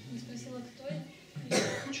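A person coughs once, sharply, about one and a half seconds in, after a second of quiet speech.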